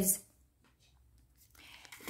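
A pause in speech: near silence after a spoken word trails off, with a faint soft noise rising in the last half second before talking resumes.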